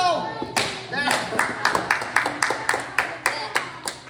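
A few people clapping their hands in quick, even claps, about six a second, starting about a second and a half in: applause for a karate board break. A short excited voice comes before the clapping.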